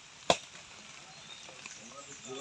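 One sharp, short crack or knock about a third of a second in, over a faint background.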